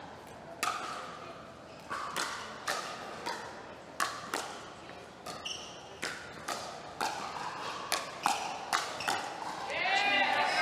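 A pickleball rally: paddles strike the plastic ball back and forth in sharp pops. The hits come faster near the end in a rapid exchange of hard shots, a little bang fest.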